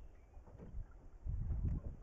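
Wind buffeting the microphone of a boat-mounted action camera: a low, uneven rumble that gusts stronger in the second half, with faint outdoor sound from the river around the drift boat.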